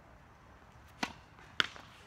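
Two sharp knocks of a tennis ball about half a second apart, the second louder: a racket hitting the ball and the ball bouncing on the hard court.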